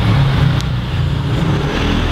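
A loud, steady low mechanical rumble, like an engine running.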